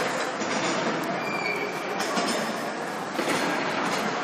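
Ice hockey rink ambience: a steady wash of noise from skates on the ice and indistinct voices around the rink.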